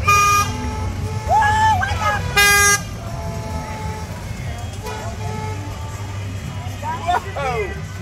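Two short blasts from a golf cart horn in a passing parade, about two and a half seconds apart, each one steady note, with a voice calling out between them. People's voices near the end, over a steady low rumble of carts rolling by.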